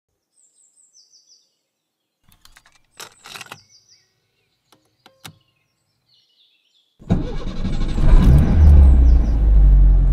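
Faint bird chirps, then plastic clicks and a clunk as a cassette tape is pushed into a car cassette deck about three seconds in. About seven seconds in, a loud low rumble of a car engine starts up and runs on.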